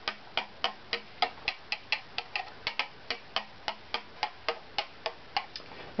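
Quick, light taps of a thin rod on the inside of an unfinished violin back plate, about four or five a second, each giving a short wooden ring: tap-tone testing along one graduated strip of the plate, whose pitch sounds about where it should be.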